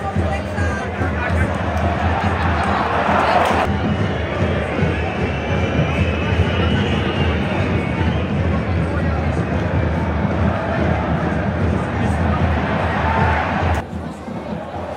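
Football stadium crowd chanting and singing, a continuous wall of many voices that changes abruptly a little under four seconds in.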